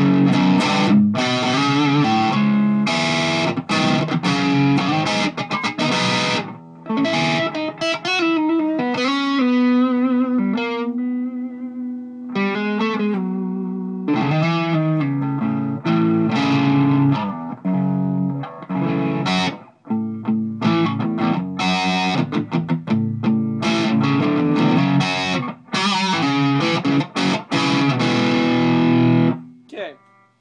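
Electric guitar played through a Boss ME-50 multi-effects on its Metal distortion setting with the variation engaged and the drive set low, giving a thick distorted tone. Chugging riffs alternate with held notes left to ring out, with a couple of brief breaks.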